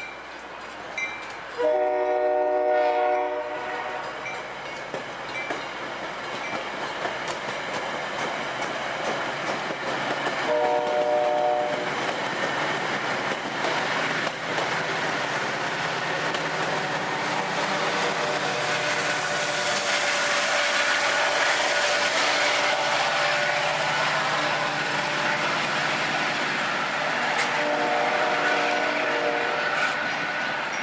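Metra commuter train passing close by: stainless-steel bilevel cars rolling over the rails with a steady wheel noise that grows louder in the second half. A train horn sounds three short blasts, near the start, about ten seconds in, and near the end.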